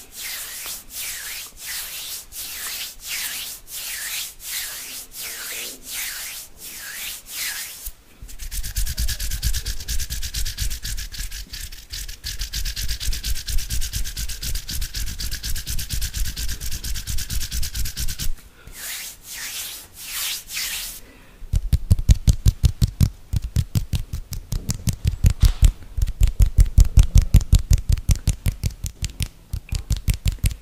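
Hand sounds made right at a condenser microphone: rhythmic swishing hand movements of about two a second, then a long stretch of dense, rapid rubbing close on the mic with deep thuds. A few more swishes follow, and then, about two-thirds of the way in, fast, hard tapping with heavy low thumps.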